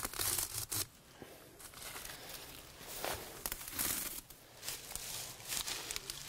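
Fern fronds and leaves being ripped from their stems by hand, a rustling, tearing crackle of foliage in several uneven bursts, loudest in the first second.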